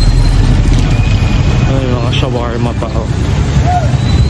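Voices talking over a loud, steady low rumble of street noise, with a person's voice most prominent about two to three seconds in.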